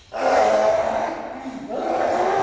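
A man yelling loudly in one long, drawn-out cry that starts suddenly just after the beginning and shifts in pitch near the end.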